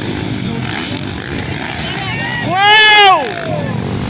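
Motocross dirt bikes running on the track, a steady engine drone, cut across a little past halfway by one loud, drawn-out shouted call from the announcer that rises and falls in pitch.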